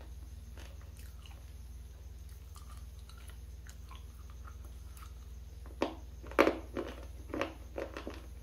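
Close-miked crunching of a hard, dry bar: faint small chewing clicks, then a sharp bite about six seconds in followed by several loud crunching chews.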